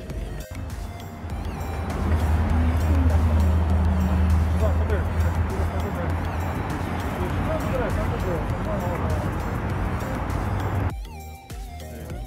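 Steady low engine rumble of a large vehicle close by on a city street, mixed with people talking and music. The rumble swells about two seconds in and cuts off abruptly near the end.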